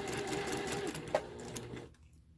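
Electric sewing machine stitching a curved quilt seam, its motor humming steadily with rapid needle strokes, then slowing and stopping near the end. A single sharp click sounds about a second in.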